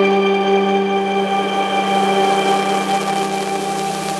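A single electric bass guitar note held and ringing out, slowly fading.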